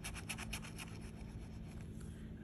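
A flat metal scratcher tool scraping the coating off a lottery scratch-off ticket in fast, quick strokes that die away about a second in.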